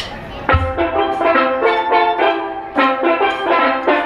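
Steel pan band starting a tune: a sharp click at the very start, then the pans come in together about half a second in, playing quick struck, ringing notes.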